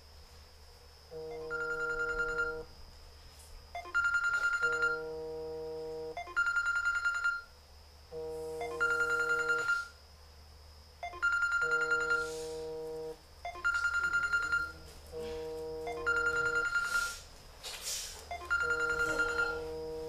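A phone ringing with an electronic ringtone: the same short chord-like tone sounds for about a second, stops, and repeats every two to three seconds.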